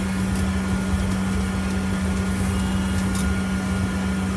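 Double-decker bus heard from inside the upper deck while driving along: a steady low hum over a rumble from the running gear and road.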